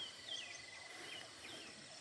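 Faint birdsong: short whistled chirps, several in two seconds, over a thin steady hum of insects in rural countryside.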